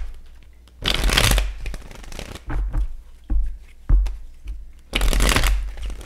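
A tarot deck being shuffled by hand: two longer rustling shuffles, about a second in and about five seconds in, with lighter taps and low knocks of the cards between them.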